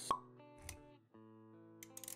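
Intro-animation sound effects and music: one short sharp pop about a tenth of a second in, a brief low thump a little past half a second, then held musical notes with a few light clicks near the end.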